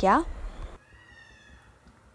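The end of a woman's spoken word, then a faint, thin, high-pitched cry of a small animal lasting under a second and falling slightly in pitch.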